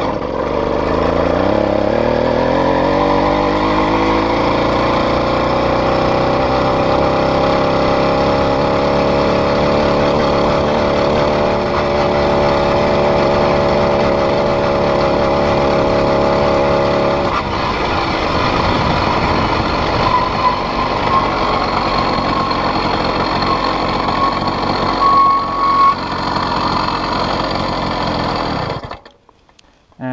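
80cc two-stroke motorized-bicycle kit engine, started by letting the clutch out while pedalling, climbing in pitch over the first few seconds as the bike pulls away, then running steadily under throttle. About seventeen seconds in its note turns rougher and less even, and the sound cuts off suddenly a second before the end.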